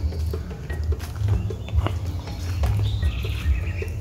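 Rainforest ambience with birds chirping faintly and sporadically over a steady low rumble on the microphone, with a few faint clicks.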